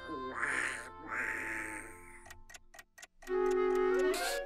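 Donald Duck's raspy cartoon voice chuckling for about two seconds, then a quick run of sharp ticks, then a held note from the orchestral score near the end.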